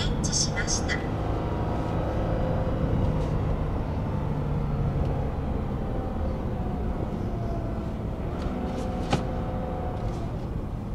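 Engine and road noise of a Toyota Crown sedan heard inside the cabin, pulling at full throttle without gaining much speed. A steady drone whose engine note sinks slowly in the second half, with a single click near the end.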